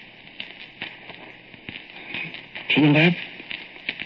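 Surface noise of a badly scratched old record: irregular clicks and crackles over a steady hiss. A man's voice says one short word about three seconds in.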